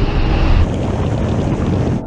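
Performance SUVs accelerating hard on a wet track: a steady, deep, noisy rush of engine and tyre sound, with wind buffeting the microphone.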